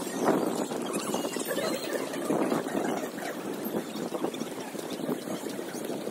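Footsteps on a concrete walkway at a steady walking pace, over a steady outdoor haze.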